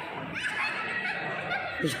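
Indistinct voices, ending in a short laugh close to the microphone near the end.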